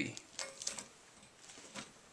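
Faint crackling and rustling of a freshly baked loaf's crust as its cut-open top half is lifted off by hand, in a few soft crackles loudest about half a second in.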